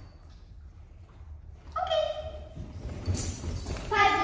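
Dogs playing on a hard floor: feet thudding and collar tags jingling, with a short high-pitched vocal call about two seconds in and another starting near the end.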